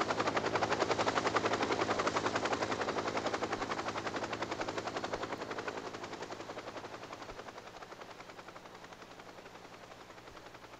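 Helicopter rotor chop, a rapid steady beat of blade slap that is loudest in the first few seconds and then fades away as the helicopter moves off.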